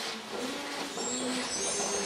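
A group of children singing a tune of held notes that step from pitch to pitch.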